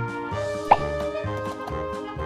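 Playful background music with a bouncy, evenly paced bass line. A short rising pop sound effect is the loudest thing, a little past a third of the way in.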